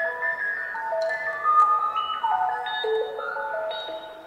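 Live band music: a bright, chime-like electronic keyboard melody of held notes stepping up and down, several overlapping at a time.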